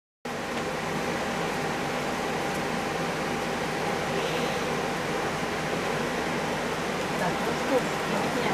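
A steady, even hiss with a faint hum under it and no change in level; a voice begins faintly near the end.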